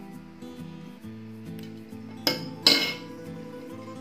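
Steel fishing pliers clinking twice against a hard surface a little over two seconds in, the second clink louder and ringing briefly, over steady background music.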